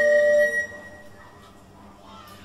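Recorder ensemble holding a final chord of steady tones that stops about half a second in, leaving only faint room noise.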